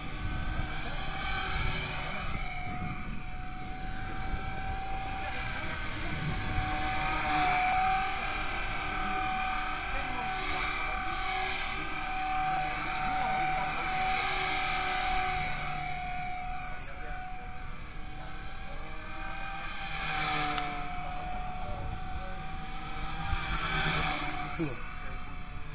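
Blade 180 CFX electric RC helicopter in flight: a steady high whine from its motor and rotor blades that rises and falls in pitch as it manoeuvres, with wind rumbling on the microphone.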